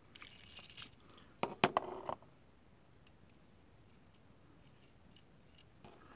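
Small metal airbrush parts being handled as the rear handle is unscrewed and taken off. There is a light scraping at the start, then a few quiet metallic clicks and clinks about one and a half to two seconds in.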